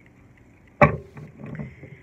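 A single sharp thump about a second in, followed by low rubbing and handling noise as the hand-held phone is jostled.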